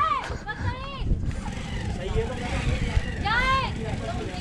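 Children shouting from a distance: three short, high calls that rise and fall in pitch, the last about three seconds in, over a low steady rumble.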